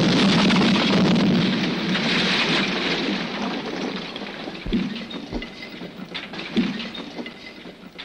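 Explosion and fire at a crash wreck: a sudden loud rushing rumble that slowly dies away, with a few dull thumps in the second half.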